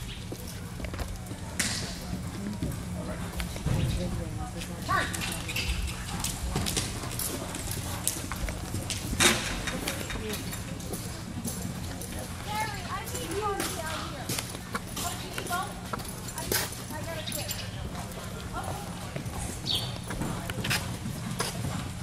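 Hoofbeats of a pony cantering and jumping on indoor arena footing, with scattered sharper knocks, the loudest about nine seconds in. A steady low hum and faint distant voices lie beneath.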